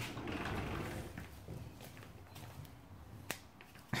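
Faint rustling of clothes being handled inside a front-loading washing machine drum, loudest in the first second. A single sharp click comes about three seconds in.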